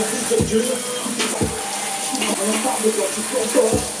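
Hand-held shower head spraying water steadily onto a Tribit StormBox Blast Bluetooth speaker. Under the hiss of the spray, the speaker keeps playing music with a singing voice and a beat.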